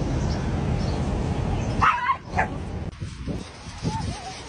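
A dog giving two short, high yips about two seconds in, and a brief rising yelp near the end, after a steady background hiss that drops away.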